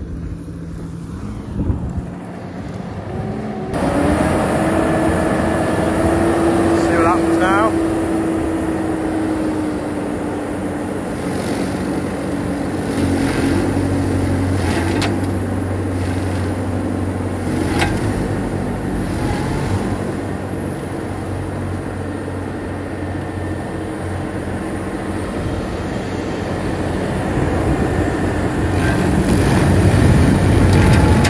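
JCB Fastrac tractor running with a front-mounted Major rotary mower spinning, a steady mechanical hum with a higher whine, louder from about four seconds in, and a few sharp knocks from the rotor.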